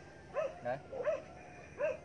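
A dog barking repeatedly: about four short barks, spaced unevenly.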